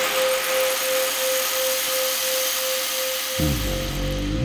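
Opening of a glitch electronic music track: a steady held tone under a wash of hissing, drill-like noise, with low, pitch-bending bass notes coming in near the end.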